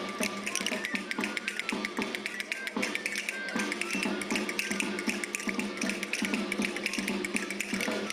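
Many castanets clicking in quick, dense runs over lively traditional folk dance music.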